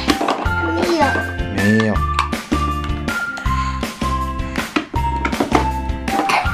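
Upbeat background music with a steady bass beat and a melody of held notes.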